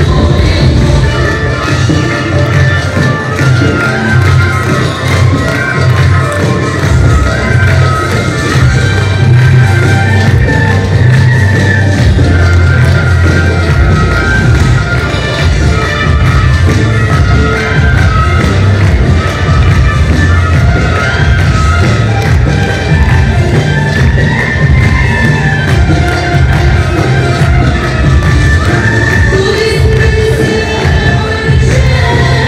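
Loud song with singing over a heavy bass beat, playing without a break.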